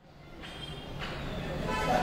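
Low background rumble that grows louder, with faint, indistinct voices near the end.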